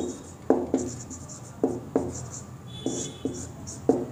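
Dry-erase marker writing on a whiteboard: a series of sharp taps as strokes land on the board, with scratchy strokes between them and a brief high squeak of the marker tip a little before three seconds in.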